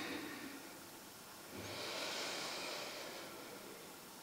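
A person breathing slowly and softly: a breath trails off in the first half second, and another swells about one and a half seconds in and fades over the next two seconds.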